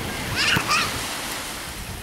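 Small sea waves washing in at the water's edge, a steady wash of surf. About half a second in, a brief high-pitched cry rises over it.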